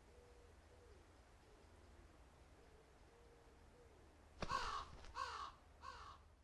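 A crow cawing three times, short harsh calls about two-thirds of a second apart in the second half, over a faint low rumble with soft, faint tones before them.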